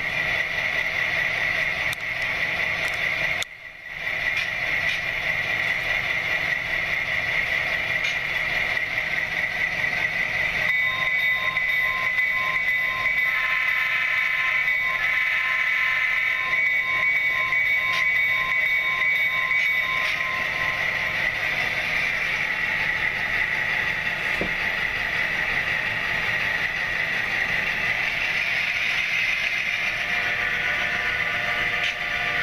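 Sound-equipped HO-scale model diesel locomotives running, their onboard decoders (Tsunami sound) playing diesel engine sound through small speakers. The sound briefly cuts out about three and a half seconds in. From about 11 to 20 seconds a locomotive bell rings, and a multi-tone horn sounds twice in the middle of that stretch.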